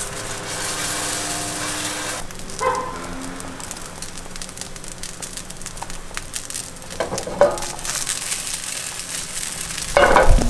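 Pancakes sizzling in a frying pan for about two seconds, then a few short knocks and clinks from handling in the kitchen.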